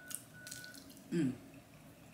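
Wet mouth and lip smacks of a person eating with her fingers and licking them, then a short hummed "mmm" of enjoyment about a second in.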